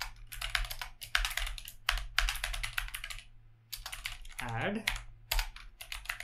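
Typing on a computer keyboard: runs of quick keystrokes broken by short pauses, with a longer gap a little past the middle.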